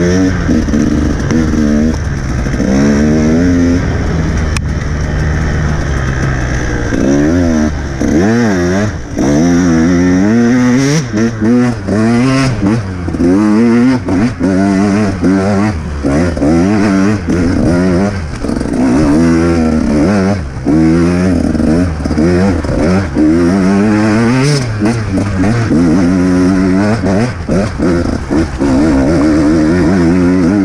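Enduro dirt bike engine under way, revving: a fairly steady note for the first several seconds, then repeated quick rises and falls in pitch, about one a second, as the throttle is opened and closed.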